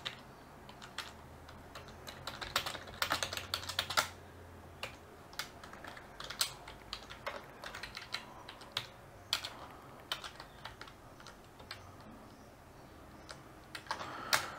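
Typing on a computer keyboard: irregular keystrokes in short runs with pauses between, busiest in the first few seconds.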